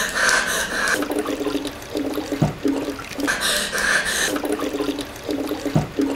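Bottled water cooler gurgling as air bubbles glug up through its 5-gallon jug: spells of rushing water alternate with a string of short low glugs, about every three and a half seconds. A low knock comes twice.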